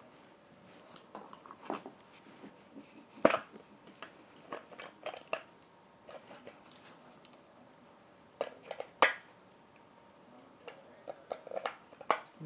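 Handling noise from a battery-operated toy being worked on: a scattered run of short clicks and knocks, the sharpest about three seconds in and again about nine seconds in.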